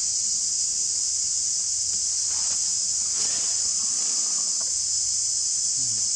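Steady, high-pitched chorus of insects, unbroken throughout.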